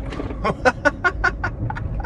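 A man laughing hard, a quick, even run of about seven 'ha's, over the low rumble of a small car's cabin.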